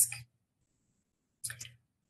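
A woman's speech trailing off at the start, then dead silence, then a brief mouth click and intake of breath about one and a half seconds in.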